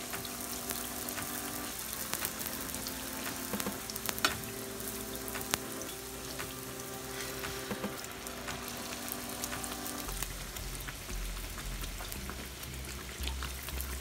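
Bhatura dough deep-frying in hot oil in a kadhai: a steady crackling sizzle with sharp pops scattered through it, one loud crack about four seconds in.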